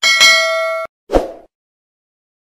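A bell-like notification ding sound effect rings for under a second and cuts off abruptly. About a second in, a short dull thud follows.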